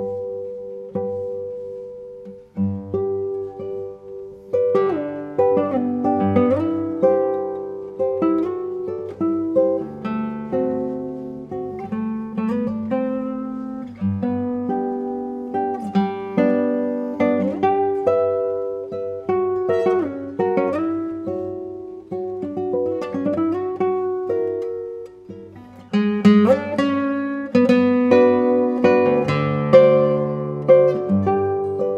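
Solo nylon-string classical guitar playing a lyrical passage of plucked melody notes over chords and ringing bass notes. The playing thins out briefly about two seconds in, then goes on fuller.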